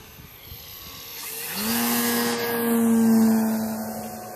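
Radio-controlled model jet flying past: a rushing noise with a steady hum that builds from about a second in, is loudest near the end, then starts to fade as it passes.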